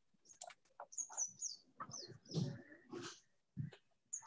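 A bird chirping faintly a few times: short high calls that fall in pitch.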